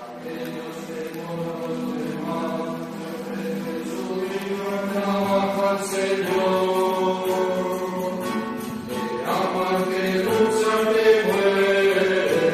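A small group of men's voices singing the offertory hymn together in long held notes. The singing grows fuller and louder about four seconds in.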